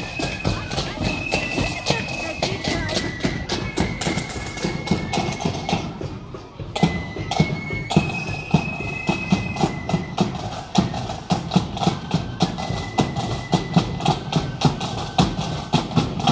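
Marching band playing in the street: a high, held melody over steady drumming, with a brief break about six and a half seconds in.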